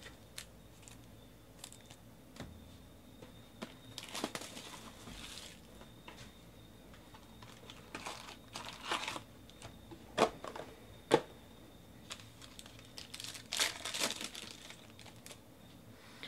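Trading-card packs and their cardboard box being handled: pack wrappers crinkled and torn open in three short bursts of rustling, with two sharp clicks in between.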